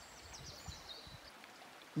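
Faint outdoor background: a soft, steady rushing noise, with thin, high, faint sounds during the first second or so.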